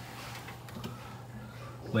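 Steady low hum from a running desktop computer, with a few faint clicks.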